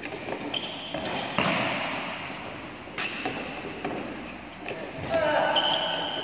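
Badminton rally: the shuttlecock is struck by rackets three times, about a second and a half apart, with short high squeaks of shoes on the court floor between hits. The hits echo in a large hall.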